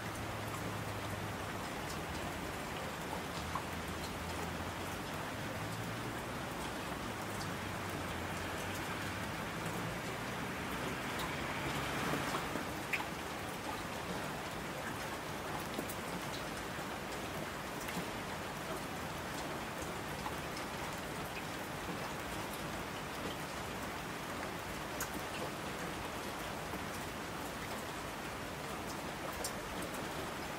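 Steady rain falling, with scattered individual drop ticks. It swells briefly louder about twelve seconds in.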